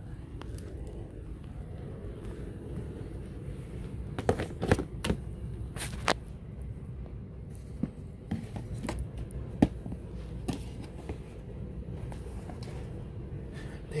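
Steady low room hum with scattered short knocks and clicks, loudest in the middle: handling noise from a handheld camera and footsteps on carpet as the person moves about the room.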